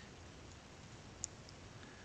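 Quiet room tone with a single sharp computer keyboard keystroke about a second in, followed by a fainter click shortly after.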